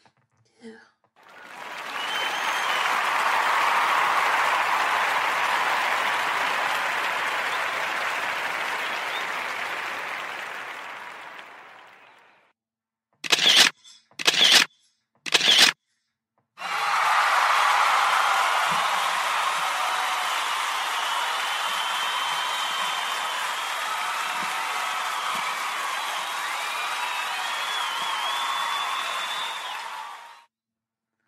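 Sound effects played one after another. First comes about ten seconds of crowd noise that swells in and fades out, then three short sharp bursts in quick succession. Last comes a second long stretch of crowd noise with a few high whistle-like tones in it.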